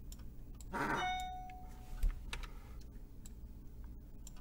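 Faint scattered clicks of a computer mouse and keyboard. A brief steady beep-like tone sounds about a second in, and a single low thump comes just after two seconds.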